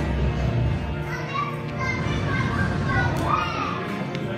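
A quieter passage of qawwali music: a steady harmonium drone carries on, with short high voices rising and falling over it, and the tabla mostly silent.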